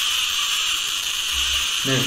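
Musical Tesla coil (plasma speaker) playing a song through its spark: a thin, high, steady buzz with no bass, in which a singer's voice can be made out. A man says "No" near the end.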